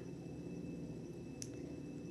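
Quiet room tone: a steady low hum and hiss, with one short, faint click about one and a half seconds in.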